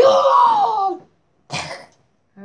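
A child's voice making a loud, drawn-out fake sick noise, pretending to be ill, about a second long with its pitch falling, followed by a short breathy burst.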